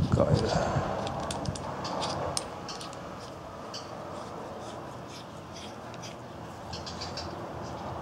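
Threaded aluminium parts of a fire piston being screwed together by hand: the threads scrape for the first couple of seconds, then quieter handling with small metallic clicks and taps.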